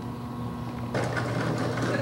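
Skateboard wheels rolling on concrete, rising to a louder rough roll about a second in, over a steady low hum.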